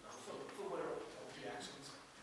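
Speech: a man talking at a table microphone.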